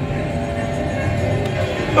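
Music from a Spider-Man coin pusher arcade machine, a few held notes over a low rumble, playing while a super spin runs.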